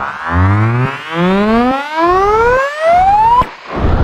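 Synthesized trap riser sound effect: a buzzy synth tone gliding steadily upward in pitch, pulsing in volume about once a second, then cutting off suddenly near the end.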